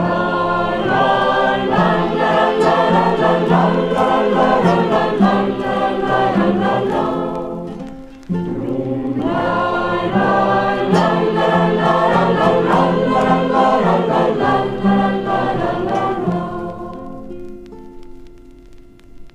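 A group of voices singing a folk song together in chorus, in two long phrases with a short break about eight seconds in. The singing fades away near the end.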